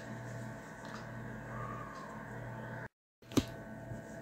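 Faint steady room hum with no distinct event, broken about three seconds in by a short gap of dead silence at an edit cut, followed by a single sharp click.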